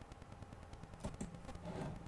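Faint steady low hum of room noise with a few soft clicks about a second in.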